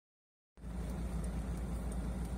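Mercedes-Benz Sprinter van engine idling steadily, a low even rumble that starts about half a second in.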